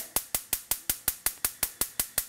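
Gas cooktop's electric spark igniter clicking rapidly and evenly, about six clicks a second, while the burner has not yet lit: described as sounding like an explosion waiting to happen.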